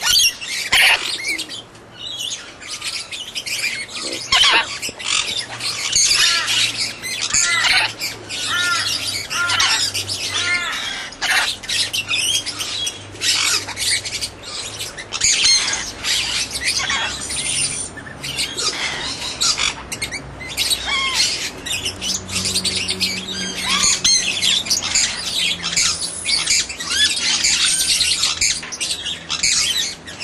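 A group of birds chirping and squawking nonstop, many short high-pitched calls overlapping, with a faint low hum underneath.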